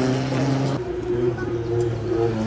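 Ford Sierra Cosworth Group A car's turbocharged four-cylinder engine running hard under load. Its note changes abruptly a little under a second in.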